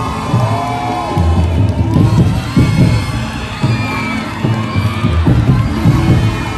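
A large crowd cheering and shouting over festival street-dance music with a steady low drum beat.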